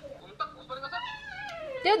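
A drawn-out vocal call sliding down in pitch for about a second, like a whiny, meow-like voice, followed near the end by a person starting to speak in a sing-song voice.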